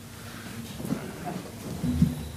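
Several people sitting down at a dais: chairs shifting and rustling, with a few soft low bumps near the microphones about a second in and near the end.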